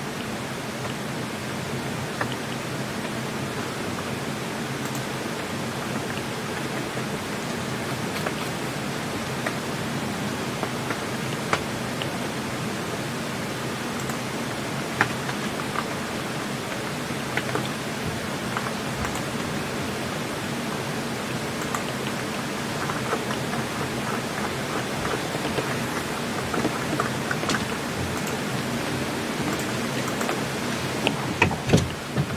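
Steady, even hiss like rain, with scattered light taps through it.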